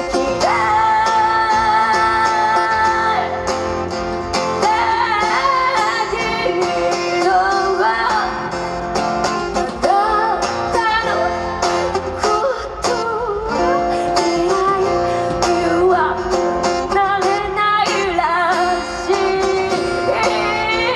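A young woman singing a slow song while strumming and picking her plugged-in acoustic guitar, played live.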